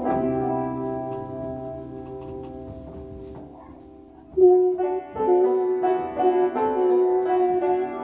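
Live piano music: a chord struck on an upright piano rings out and fades away over about four seconds. About four seconds in, the music comes back louder with a run of held notes that change pitch every half second or so.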